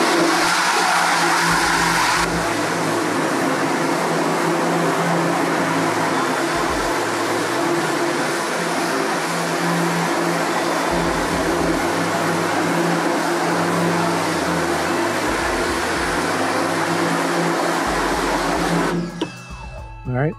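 Electric pressure washer running with a steady motor hum while its wand sprays water onto an exposed screen-printing screen, washing out the emulsion. The spray and hum cut off about a second before the end, as the trigger is released.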